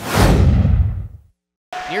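Edited-in transition sound effect: a sudden whoosh with a deep boom that sweeps downward and fades out within about a second. Arena sound and a commentator's voice return near the end.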